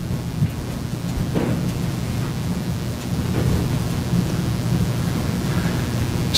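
Steady low rumbling noise with a hiss above it from the courtroom microphone feed, a fault in the courtroom mics' sound.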